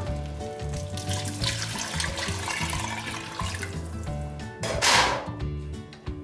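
Hot water being poured into a stainless-steel pressure cooker of sautéed meat and tomatoes, a steady splashing rush of liquid, with a louder burst of noise about five seconds in.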